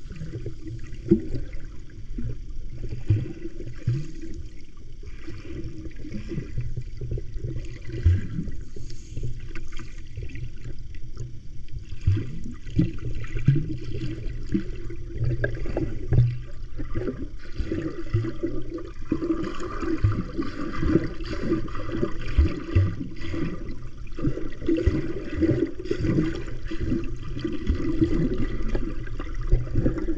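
Muffled underwater water noise picked up by a camera held below the surface while a snorkeler swims: a steady low rumble with many small knocks and clicks throughout.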